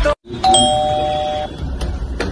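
Electronic doorbell ringing: a steady two-tone chime held for about a second, followed by a light click near the end as the door bolt is handled.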